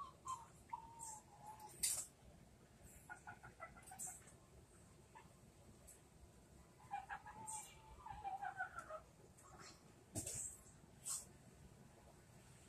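Faint bird calls: scattered brief, sharp high-pitched chips, and short wavering lower calls near the start and again from about seven to nine seconds in.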